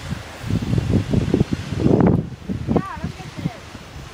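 Wind buffeting the microphone in irregular gusts, with a brief voice about three seconds in.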